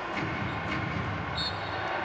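Steady low arena din of a basketball game, with a brief high squeak about one and a half seconds in.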